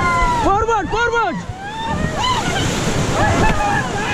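Whitewater rapids rushing around an inflatable raft, with the crew shouting over it in loud, arching calls. The two strongest shouts come about half a second and a second in, and weaker calls follow later.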